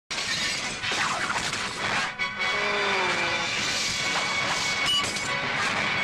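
Music for a film company's animated logo, thick with noisy effects and a few sudden hits, with a falling tone about two and a half seconds in.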